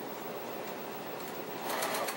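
Juki TL-98Q straight-stitch sewing machine running steadily, its needle stitching two quilt patches together in a fast, even run of stitches.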